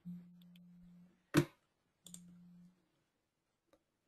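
A computer mouse clicking once, sharp and short, about a second and a half in, with a few much fainter clicks around it. A faint low hum comes and goes twice.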